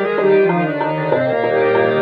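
Hindustani classical music in Raag Bihag: a harmonium plays a quick run of stepped melodic notes in fast teentaal, with tabla accompaniment around it.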